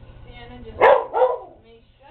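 A dog barking twice in quick succession, about a second in, the second bark shortly after the first.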